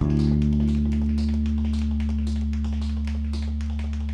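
Live band holding one long, low sustained chord, with light ticking taps above it; the chord cuts off near the end, and plucked guitar starts again.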